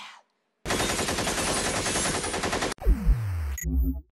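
Machine-gun fire sound effect: a rapid burst of about two seconds that cuts off suddenly. Near the end comes a falling tone with heavy low thuds.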